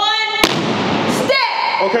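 A step performer's shouted call, then about half a second in a single sharp percussive hit from the step routine, followed by a noisy rush lasting under a second and another shouted call.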